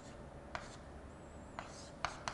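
Chalk writing on a chalkboard: two light taps of the chalk, about half a second and about a second and a half in, with soft scratching strokes near the end and a faint thin squeak just before the second tap.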